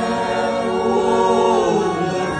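A group of voices singing a worship song together, holding long notes, with the pitch sliding down near the end.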